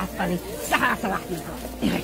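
People talking, several voices overlapping, with a few sharp hissing consonants.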